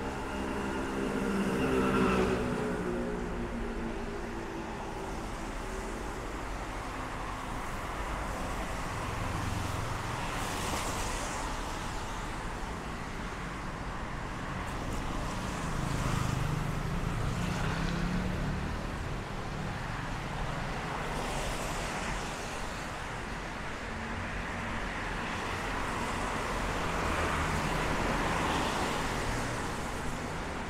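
Street traffic: a steady rumble of road noise with vehicles passing one after another. Near the start a passing engine drops in pitch as it goes by, and two more vehicles swell up and fade later.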